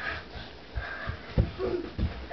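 A baby's short, quiet breaths and soft voice sounds, with a few dull low thumps in between.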